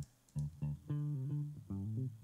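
Bass line from a Logic Pro X software instrument, playing a run of short low notes through the Phat FX bandpass filter with the highs cut off, so that mostly the lows are left.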